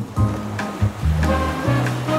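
Background music with held bass notes and a few sustained higher notes over a light hiss.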